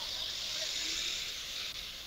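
Steady background hiss with no other distinct sound.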